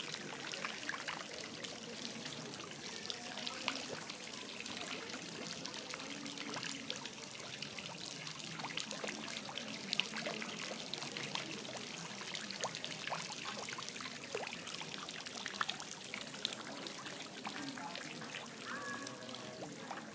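Water from a small fountain's jets falling and splashing into its basin: a steady trickle and patter of droplets.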